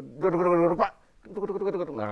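A man's voice vocalizing in wordless, wavering syllables, in two drawn-out phrases with a short pause about a second in, as a vocal illustration of the Baris warrior dance's expression.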